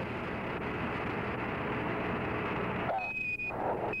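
Steady static hiss on the Apollo 14 air-to-ground radio link. About three seconds in it is cut by a short high beep, and a second beep follows at the very end: Quindar tones keying a Mission Control transmission.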